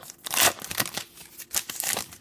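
Plastic wrapper of a baseball card pack being torn open and crinkled by hand, in a string of crackling bursts, loudest about half a second in and again near the end.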